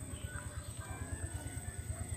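A low, rapid pulsing thrum, about ten beats a second, from a running machine, under a faint steady high-pitched whine.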